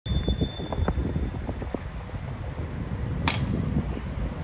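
Heavy wooden Evzone clogs (tsarouchia) clacking on marble paving: a run of light taps in the first second, then one sharp clack about three-quarters of the way through, over a steady low rumble.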